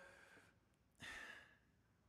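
A man's single short breath picked up by the microphone about a second in, in a pause between sentences; otherwise near silence.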